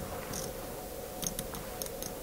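Poker chips clicking lightly as they are handled at the table: a few scattered clicks over a low steady room hum.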